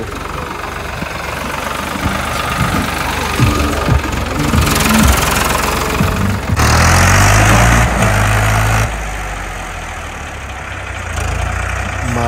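Diesel tractor engine running steadily, growing louder for about two seconds in the middle before settling back.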